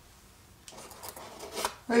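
A few light clicks and scrapes, starting about a second in: pins being pulled out of glued foam insulation board.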